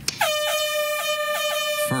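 A loud, steady horn-like tone that starts a moment in with a quick scoop up to pitch and then holds, with a slight rapid pulsing.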